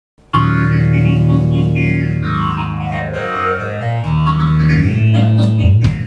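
A live band plays an opening passage. Sustained low bass notes step through a few pitches under wavering, bending higher notes, and the music starts suddenly just after the beginning.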